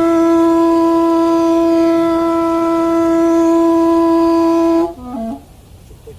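Music: a wind instrument holds one long steady note for nearly five seconds, then plays a few short notes before dropping off.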